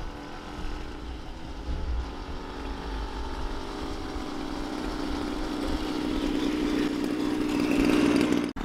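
Small motorcycle engines, a child's pocket bike with a second motorcycle behind it, running at a steady pace as they ride closer. The engine hum grows gradually louder and strongest near the end.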